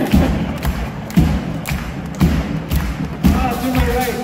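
Live band playing a rumba: strong, evenly spaced drum beats about twice a second over a bass line, with a higher melody line entering near the end.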